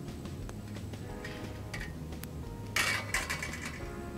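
Background music, with handling noises as raw sausages are laid into a wire grill basket on a metal tray: a few light sounds and one brief, louder burst of noise about three seconds in.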